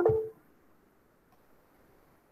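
A short click followed by a brief steady electronic-sounding tone at the very start, lasting about a third of a second, then near silence.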